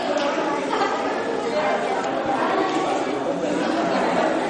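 Overlapping, indistinct chatter of several voices, with no single voice standing out.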